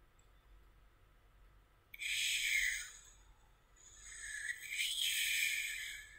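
Two breathy hisses, like a person breathing out close to the microphone: a short one about two seconds in and a longer one from about four seconds in, fading at the end.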